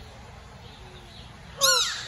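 A short, loud animal cry about one and a half seconds in, a single note that falls in pitch.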